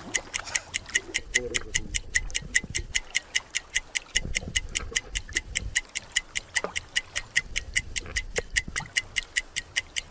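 Clock ticking sound effect, an even, rapid tick of about five a second, marking the seconds of a breath-hold timer.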